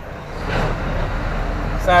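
Scania lorry's diesel engine and road noise heard from inside the cab, a low steady rumble that grows louder about half a second in as the lorry picks up along the street.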